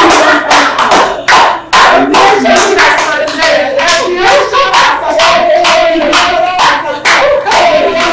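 A small group clapping in a steady rhythm, about two or three claps a second, with excited shouting and cheering voices over the claps.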